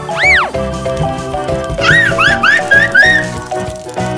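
Bouncy children's background music with cartoon sound effects: a whistled glide that swoops up and back down just after the start, then a quick run of about six short up-and-down chirps in the middle.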